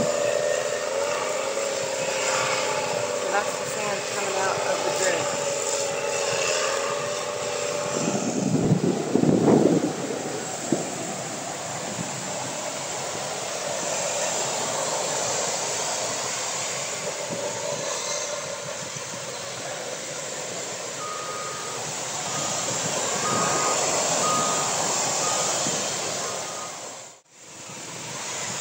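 Heavy earthmoving machinery working on a beach: an engine running with a wavering whine for the first several seconds, a loud rush about eight seconds in, then a steady wash of surf and wind. Near the end a backup alarm sounds a series of evenly spaced beeps.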